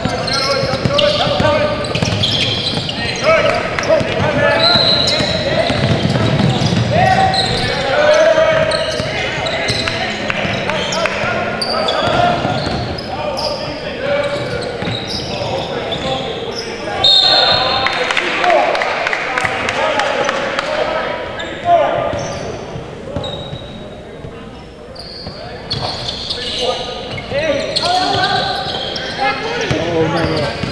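Basketball game in a large gym, echoing: the ball bounces on the hardwood floor, short high squeaks come and go, and voices of players and spectators call out throughout.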